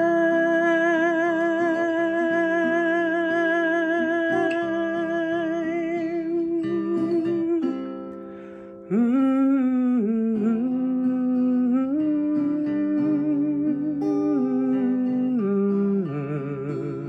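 A man's voice holds one long sung note with vibrato over acoustic guitar, the end of the line "still on the line"; the note dies away about eight seconds in. After a short dip he hums a wordless melody over the guitar.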